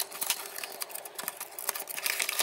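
Cardboard box being worked out of its card sleeve by hand: a quick run of small clicks, scrapes and rustles of card.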